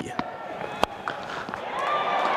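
Cricket bat striking the ball: one sharp crack a little under a second in, over the low murmur of a stadium crowd. The crowd noise swells after the shot as the ball races away towards the boundary.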